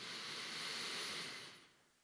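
One long, audible breath, heard close up through a handheld microphone, that fades out about a second and a half in.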